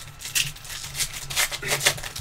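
Trading cards being handled, sliding and rubbing against one another in about five short rustling strokes.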